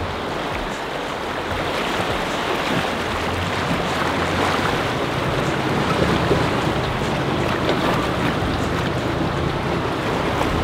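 Water rushing and splashing steadily as a Toyota LandCruiser Troop Carrier's front wheel churns through a shallow, rocky river crossing.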